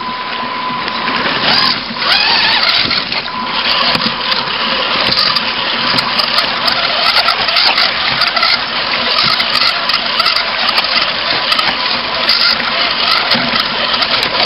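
Electric motors and gear drives of RC rock-crawler trucks running through shallow river water, heard from a camera mounted on one truck, with splashing and a continual clatter of tires and chassis over river rocks. A steady whine drops out about a second and a half in.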